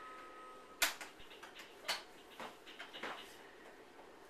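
Hard plastic clicks and taps from a baby's toy activity table as its buttons and parts are pressed and slapped: a sharp one about a second in, then several smaller ones over the next two seconds.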